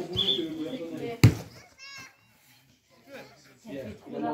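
Voices talking, cut by a single sharp thump about a second in, the loudest sound here. After it comes a mostly quiet stretch with a brief high-pitched wavering sound, and voices pick up again near the end.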